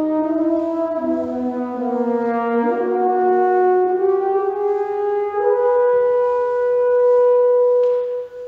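French horn and bassoon playing a slow two-voice phrase with the piano silent. The horn climbs to a long held note about five seconds in and holds it to the end.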